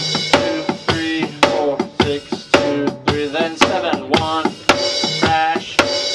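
Electronic drum kit played in a steady rock beat, with sharp hits about twice a second, over a play-along backing track with pitched instruments.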